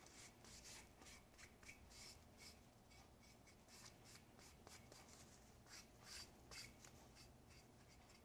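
Faint, irregular rubbing strokes of a cloth pad wiping shellac onto a walnut box, a few strokes a second.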